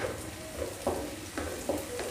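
A spatula stirring chopped vegetables in a nonstick kadhai, with a few short scrapes against the pan over light frying sizzle.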